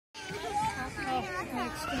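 Young children's voices talking and chattering, high-pitched, with more than one voice overlapping at times.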